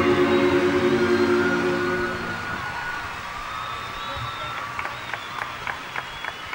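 A live band's held final chord fades out about two seconds in, leaving arena audience applause and cheering with some whistling. A run of sharp clicks comes near the end.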